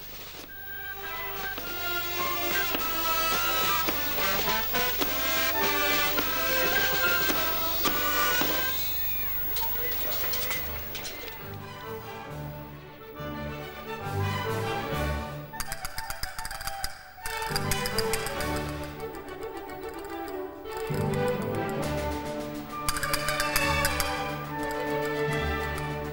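A brass and woodwind band playing a processional tune. Deep tuba-like bass notes join the melody from about ten seconds in.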